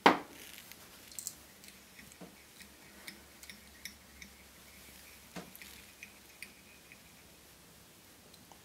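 A sharp knock, then scattered light clicks and taps of small fly-tying tools and materials being handled at the vise.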